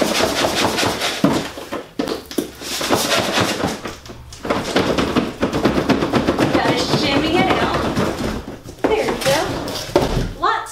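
Cardboard shipping box being shaken, tipped and scraped as a heavy boxed Cricut Maker cutting machine is worked out of it: continual rustling and sliding of cardboard on cardboard with many small knocks.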